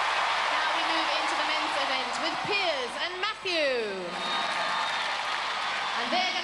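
Large arena audience cheering, with loud whoops and shouts sliding down in pitch rising over the crowd from about two seconds in.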